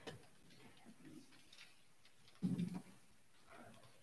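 A quiet church sanctuary with faint scattered rustles and ticks as people settle for the readings, and one brief low sound about two and a half seconds in.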